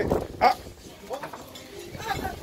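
A person's short startled exclamation, "ah", about half a second in, followed by a few quieter brief vocal sounds.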